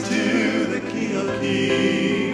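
A choir singing a slow worship song in harmony, accompanied by keyboard.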